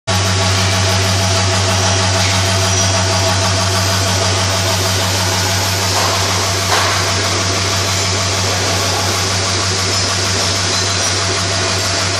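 Vibratory bowl feeder and linear track feeder running, a steady loud electric buzz with a low hum at its core, over an even rattling hiss of small parts travelling along the vibrating tracks.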